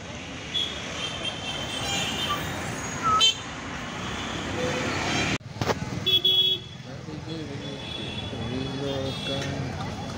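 Busy night street traffic: a steady din of engines and tyres with vehicle horns beeping several times in short toots, the loudest about six seconds in.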